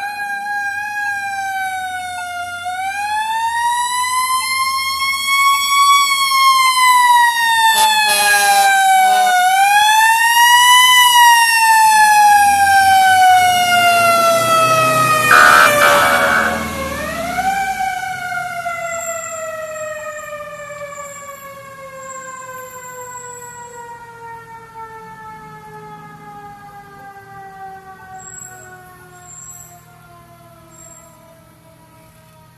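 Fire truck siren wailing in long, slow pitch glides: it winds up, rises and falls twice, then coasts down and winds up once more. Two short horn blasts come about eight and sixteen seconds in, with engine rumble as the truck passes. It is loudest in the middle, then fades as the truck moves away.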